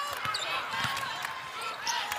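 A basketball being dribbled on a court during a game, with short high squeaks and steady arena background noise.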